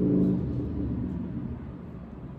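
A low rumble that fades slowly, with a steady low hum in the first half-second.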